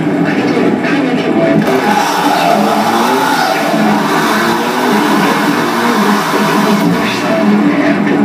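Live noise music from a table of effects pedals and electronics: a loud, dense wall of electronic noise with stuttering, chopped-up low tones. A harsh hiss joins in over the top about two seconds in and drops away near the end.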